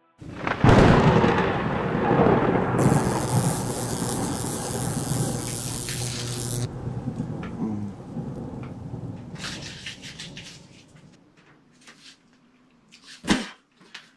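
A sudden crack of thunder with rain hiss, rolling on in a long rumble that fades away over about ten seconds, with a few faint clicks near the end.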